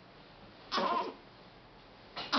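A sleeping newborn baby gives one short grunt, a little under a second in, the kind of straining noise a baby makes while pushing out a poop.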